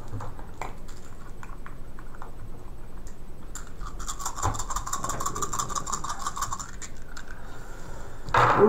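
Plastic dice rattling as they are shaken in a hand: a dense run of rapid clicks for about three seconds in the middle, after a few scattered clicks of dice being picked up.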